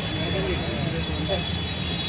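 Indistinct voices talking over a steady low hum of background noise, with a faint thin high whine running through.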